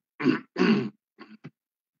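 A person clearing their throat: two loud rasps within the first second, followed by a couple of short, softer sounds.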